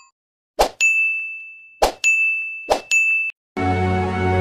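Notification-bell sound effects from a subscribe-button animation: three sharp clicks, each followed by a steady ringing ding. Soft background music comes in near the end.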